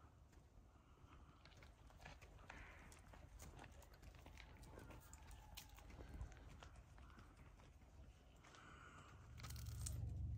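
Near silence: faint outdoor ambience with a low rumble and a few light scattered clicks, swelling a little louder near the end.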